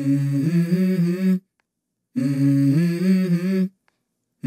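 Background music: a hummed vocal phrase of about a second and a half, heard twice with a short silence between, each stepping up in pitch partway through.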